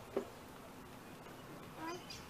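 A toddler's short, squeaky call rising in pitch near the end, after a brief small vocal blip just after the start, over faint steady light rain.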